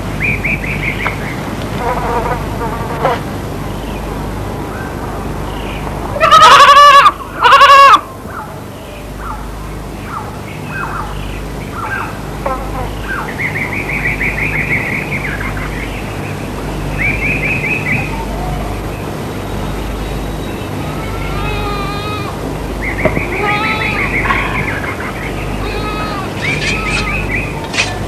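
A goat bleating loudly twice in quick succession, about six seconds in, over birds calling in short repeated chirping trills throughout, with a low steady hum underneath.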